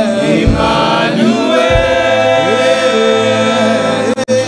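A church congregation singing a worship song together over held musical notes.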